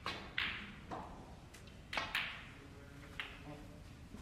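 Snooker cue and balls: a few sharp clicks and knocks of the cue tip on the cue ball and of ball contact, with a close pair about two seconds in.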